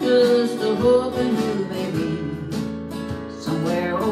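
A woman singing a slow country song to her own strummed acoustic guitar. Her voice holds notes over the chords in the first second or so, then the guitar strums carry on with little voice until near the end.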